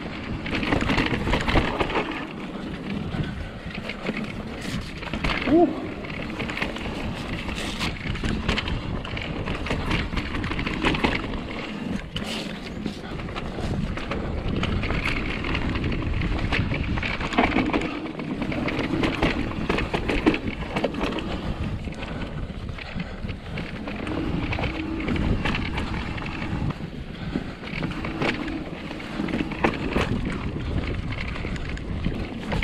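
Mountain bike descending a dirt trail: knobby tyres rolling over clay and roots, with a continual rattle of chain and frame and frequent sharp knocks over bumps.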